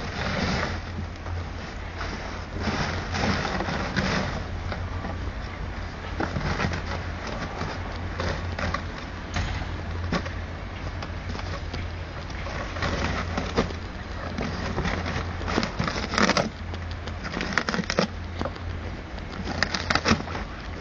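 French Bulldog biting and clawing at a cardboard box, giving irregular bouts of crunching and scraping cardboard, busiest near the end. A steady low hum runs underneath.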